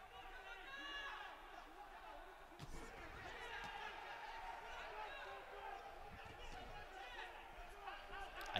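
Faint voices calling out over quiet arena background, with a single sharp thump about two and a half seconds in.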